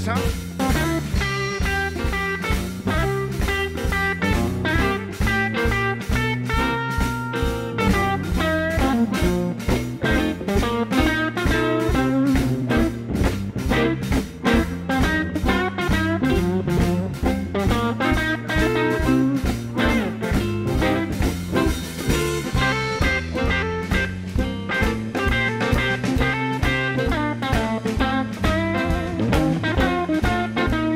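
Live electric blues band playing with a steady beat: electric guitar over bass and drums.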